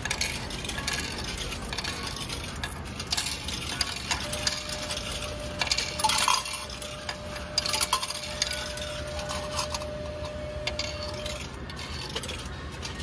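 Coins clinking and dropping through a meal-ticket vending machine, with short clicks from its buttons and mechanism. A thin steady tone starts about a third of the way in and stops shortly before the end.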